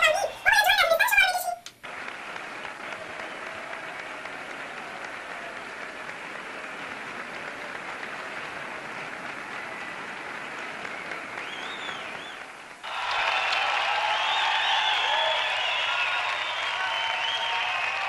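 Audience applause, an even steady clapping. About 13 seconds in it grows louder, with voices mixed in.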